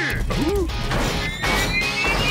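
Animated-battle sound effects over a music score: crashes and impacts, then a rising whine building through the second half.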